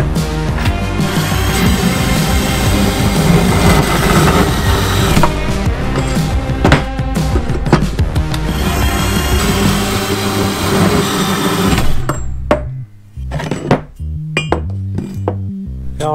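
Background music over a portable metal-cutting band saw running as it cuts through a steel tube. The dense saw-and-music mix drops away about twelve seconds in, leaving sparser music.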